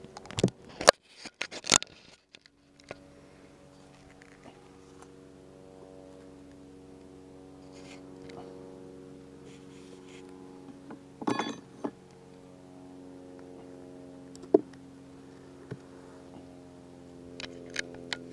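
Honeybees in an open hive humming with a steady low buzz, while the wooden frames are handled: a run of sharp knocks and clicks at the start, a short scrape about eleven seconds in, and one more click a few seconds later.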